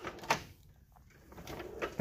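Soft-close drawer of a Mac Tools Edge tool box: a short knock as a drawer is shut just after the start, then a drawer sliding open near the end.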